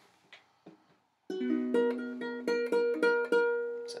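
Ukulele strummed, a chord struck again and again and left ringing, starting about a second in after two faint clicks. It is a check of the tuning, which sounds a little better.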